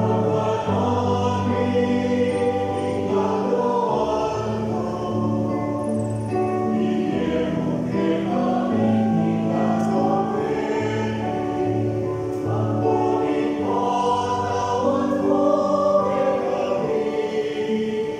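Mixed church choir of men and women singing a hymn in parts, with steady held chords from a keyboard accompaniment underneath.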